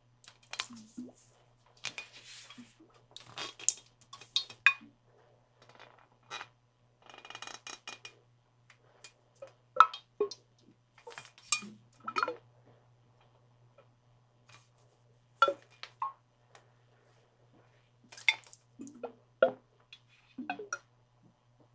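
Fingers tapping, scratching and handling a clear skull-shaped water container, making irregular clinks and taps, some with a brief ring. A faint steady low hum runs underneath.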